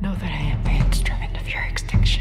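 A whispered voice over low, droning music, with a sharp hit near the end.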